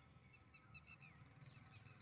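Near silence with a few faint, short bird chirps, one of them falling in pitch near the end.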